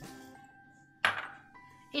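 Soft background music with a single metal clink about a second in that rings briefly and fades, a small steel bowl being set down on the counter.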